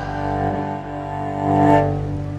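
Cello bowed on a sustained low note with higher overtones, swelling to a hard, loud final bow stroke near the end and then ringing on.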